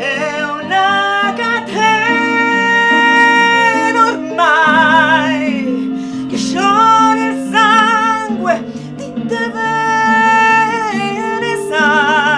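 A woman singing a slow ballad in a powerful voice, with long held notes and wide vibrato, over instrumental backing.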